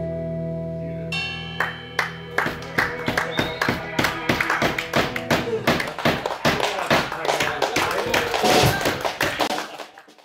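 An electric blues band's last chord ringing out, then audience applause from about a second and a half in, fading out near the end.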